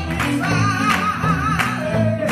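Live church gospel singing: women's voices singing into microphones over instrumental accompaniment with a steady beat, with hands clapping along.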